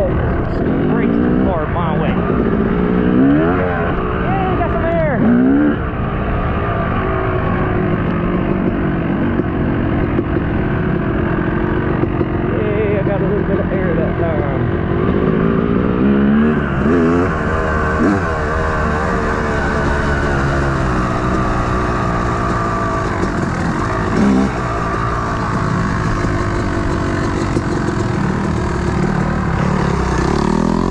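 Yamaha YZ250 two-stroke dirt bike engine being ridden hard, its pitch rising and falling again and again as the throttle opens and closes through the gears, over a steady rushing noise.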